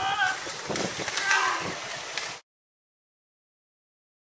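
Voices calling out over a light background hiss. About two and a half seconds in, the sound cuts off abruptly to dead silence.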